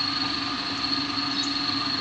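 A steady hum with an even hiss over it, unchanging throughout, from a kitchen where dough is frying in hot oil.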